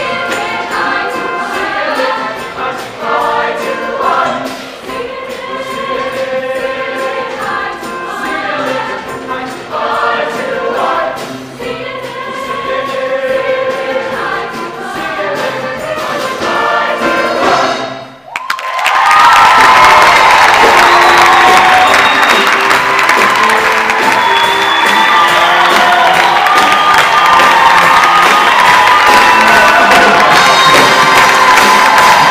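A mixed-voice show choir singing with a live band of guitars, keyboard and drums. About two-thirds of the way through the music cuts off for a moment, then comes back at full volume with the audience cheering loudly over it.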